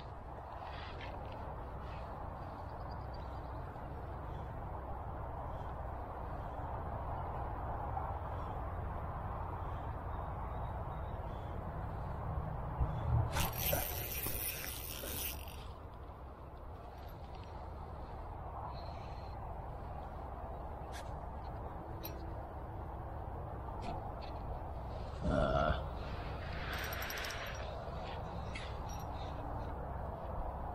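Dry reeds rustling and crackling as they are pushed and handled, over a steady low rumble, with a louder burst of rustling about halfway through and a single knock a few seconds before the end.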